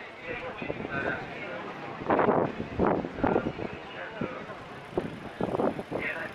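Voices of people talking in the street, loudest about two seconds in and again near the end, over steady traffic noise.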